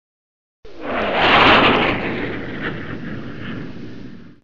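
Whoosh sound effect for an animated logo intro: it starts suddenly about half a second in, swells to its loudest around a second and a half with a falling tone underneath, then slowly fades away.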